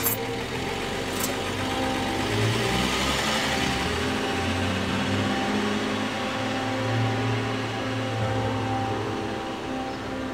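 An older sedan's engine runs and the car pulls away, with a swell of tyre and engine noise a few seconds in. A low, steady music drone plays underneath.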